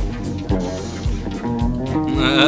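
A live jazz-funk band playing: electric guitar over bass and drums, with a steady beat about two times a second.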